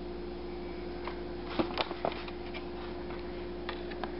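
A few light clicks and taps from a clear plastic egg carton being handled, bunched together about halfway through, over a steady low electrical hum.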